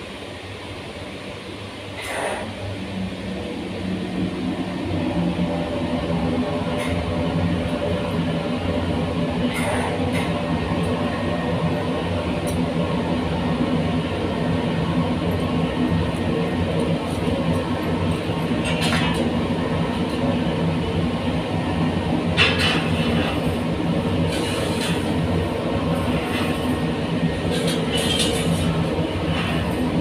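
Cremation furnace burner lighting about two seconds in and building over a few seconds to a steady running noise with a low hum, the fire burning in the chamber. A few sharp knocks sound over it later on.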